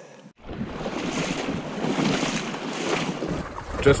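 Steady rushing wind noise buffeting the microphone over moving river water. It starts abruptly after a moment of silence, and a low rumble comes in near the end.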